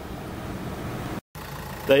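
Steady, even background hum with no distinct events, broken by a moment of dead silence at an edit about a second in; a man's voice starts right at the end.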